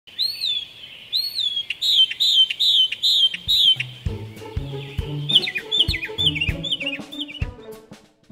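A bird chirping in a series of short whistled notes that rise and fall, at first about one a second, then quicker. About four seconds in, music with a bass line and drum beat comes in, and the chirps carry on over it until near the end.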